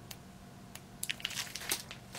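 Faint crinkling and clicking of clear plastic packaging on makeup brushes as they are handled. It comes as a scatter of short crackles in the second half.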